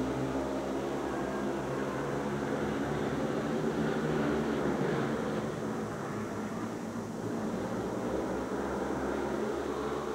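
Several 500cc single-cylinder speedway motorcycles racing round the track, their engines running together in a steady, overlapping drone.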